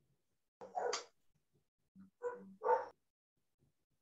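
A dog barking a few times in two short groups, one bark about half a second in and a quick run of barks around two to three seconds in.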